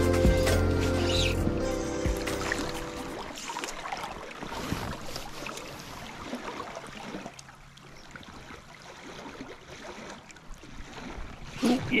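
Background music fades out over the first three seconds or so, leaving the faint, steady rush of a shallow river running over stones.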